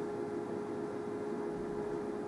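A steady background hum with one constant tone over a faint even hiss, unchanging throughout: room tone from an electrical or mechanical source.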